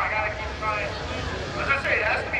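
Men's voices talking close to a handheld microphone, over a steady low rumble.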